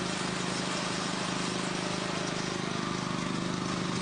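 An engine running steadily: an even hum with a hiss over it.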